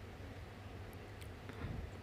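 Faint stirring of a thick simmering stew with a spatula in an aluminium pot, with a few light clicks of the spatula against the pot, over a low steady hum.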